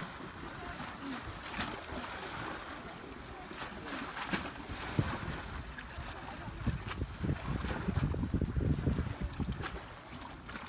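Wind buffeting the microphone over shallow sea water, with a low rumbling gust that swells in the last few seconds. Light water sounds and a few faint voices sit underneath.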